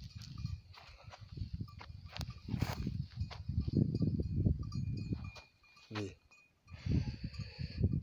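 Uneven low rumble of handling and wind noise on a handheld phone microphone as it is carried over the grass plot, with a few light clicks. A brief animal call comes about six seconds in.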